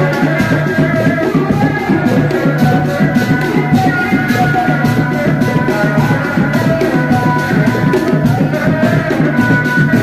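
Sundanese reak music: dogdog drums keep a fast, steady beat under a sustained, piercing melody line, with no break.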